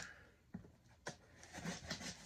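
Quiet room with two short clicks about half a second apart as a knife blade cuts through the packing tape on a cardboard box.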